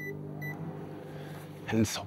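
Microwave oven keypad beeping twice as it is set, then the oven switching on and running with a steady low hum.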